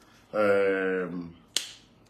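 A man's drawn-out vocal sound held on one pitch, followed by a single sharp finger snap about a second and a half in.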